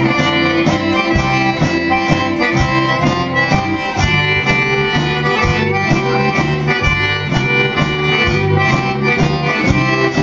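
Live instrumental band music: a button accordion carries the tune over strummed acoustic and electric guitars, with a fiddle, in a steady even beat.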